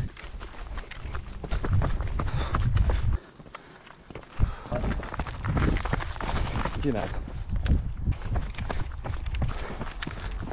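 Running footsteps on a dirt trail and a paved lane, a rapid run of knocks over a low rumble, broken by a quieter gap of about a second near the middle.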